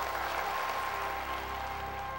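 A crowd applauding, with music holding steady notes underneath.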